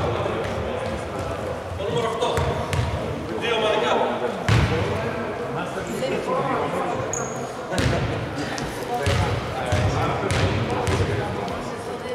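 A basketball bouncing on a hardwood gym floor several times at uneven intervals, each bounce a short thump that echoes in the hall.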